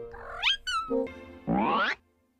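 High-pitched cartoon kitten meows and squeaks, gliding up and down in pitch, over cartoon music. It ends in a loud rising sweep about a second and a half in that cuts off abruptly.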